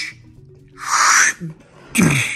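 A single short, breathy whoosh about a second in, a mouthed sound effect for the toy's jump, over faint background music.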